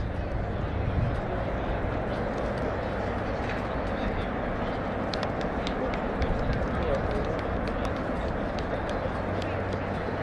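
Steady outdoor background noise with a low rumble, distant voices and faint scattered light ticks.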